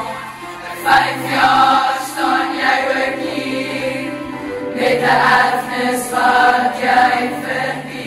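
A large choir of teenage girls singing a school song together, phrases swelling and fading, with a low steady note held underneath.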